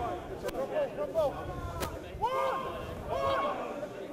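Rugby players shouting calls at a distance over open-air crowd noise. A couple of sharp cracks come about half a second and nearly two seconds in.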